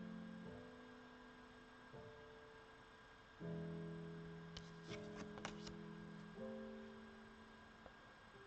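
Quiet background music of slow, held chords that change about every one and a half seconds. A few brief clicks come through about five seconds in.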